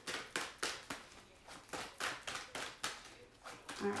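A deck of tarot cards being shuffled by hand: a steady run of short soft clicks and slaps of card on card, about two to three a second.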